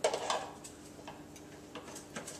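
Metal beaters being pushed into the sockets of an electric hand mixer: a few faint, scattered clicks and ticks, over a faint steady hum.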